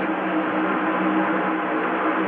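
NASCAR Winston Cup stock cars' V8 engines running on the track, a loud steady drone that holds one pitch.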